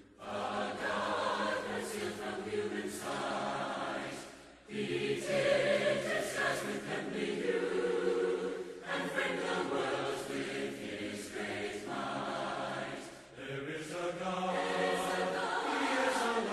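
Church congregation singing a hymn a cappella, many voices in harmony, in phrases with brief breaks about four and a half and thirteen seconds in. This is the invitation song, sung while people are called forward to respond.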